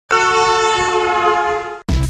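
A vehicle horn sounded in one long, steady blast of several tones at once, cut off sharply near the end. Electronic music starts right after.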